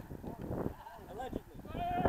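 Rugby players' shouted calls carrying across the field, with one drawn-out call held at a steady pitch near the end as the lineout goes up.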